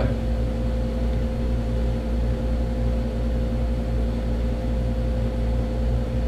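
Steady room hum from a window air conditioner running: a low drone with a few constant tones over even fan noise, unchanging throughout.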